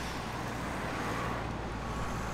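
Steady outdoor background noise: a low rumble and an even hiss with a faint steady tone, without distinct events.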